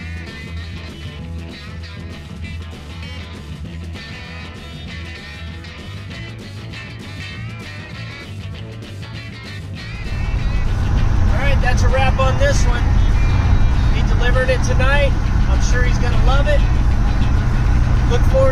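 Background guitar music for the first ten seconds. About ten seconds in it gives way to louder, steady engine and road rumble inside the cab of the LS-swapped 1954 GMC pickup on the move, with a voice over it.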